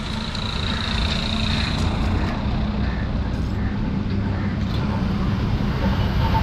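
Steady low rumble of a motor vehicle running on the road, with a faint high whine in the first two seconds.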